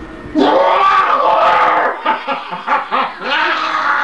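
A man's loud, wordless cry with his mouth full of bread. It is held for about a second and a half from about half a second in, then breaks into shorter, choppier cries.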